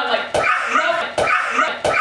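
Excited voices and laughter in short bursts, with about four sharp knocks or slaps among them.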